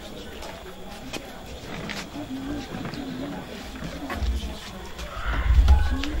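Wordless human voices rising and falling in pitch, with a few sharp clicks. From about four seconds in, low rumbling thumps grow louder and are loudest near the end.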